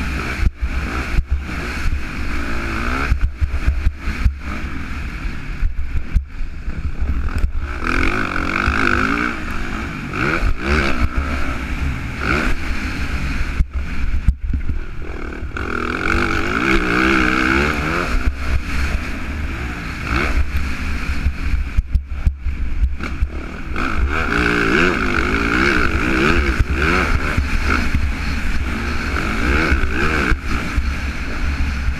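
Yamaha motocross bike's engine being ridden hard, revving up and falling back again and again, with steady wind buffeting on a helmet-mounted microphone and frequent brief knocks.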